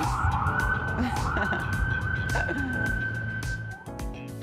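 Emergency-vehicle siren: a wailing tone that rises about half a second in, then holds high and steady until it cuts off just before the end.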